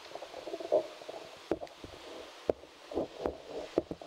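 Handheld microphone being gripped and handled: a few sharp knocks, most of them in the second half, over dull rubbing noise.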